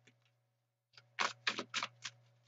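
A deck of tarot cards being shuffled in the hands, the cards clacking against each other in a quick run of sharp snaps, about four a second, beginning a little after a second in.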